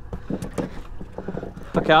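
A conventional jigging reel being cranked against a fish, with faint irregular clicks and handling noise over a low steady background. A man starts speaking near the end.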